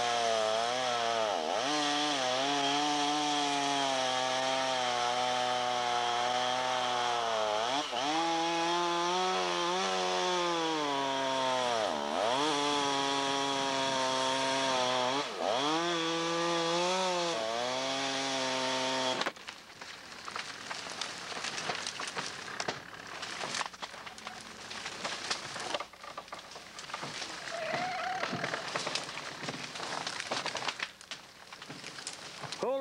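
Small engine of the cable winch hauling the main lines, running hard with its pitch bogging down several times under the pull and recovering. It stops abruptly about two-thirds of the way through, leaving quieter rustling and handling noise.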